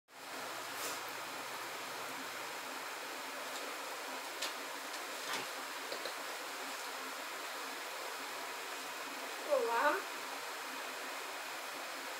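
A steady hiss of background noise, loud enough to be called "muito barulho", with a few faint clicks and a short vocal sound that rises and falls near the end.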